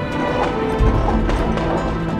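Background music with held tones and several sharp, separate knocks.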